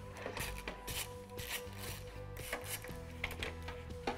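A socket ratchet clicking in short, irregular rasps as it unscrews the small 5.5 mm bolts on a headlight's top cover, over quiet background music.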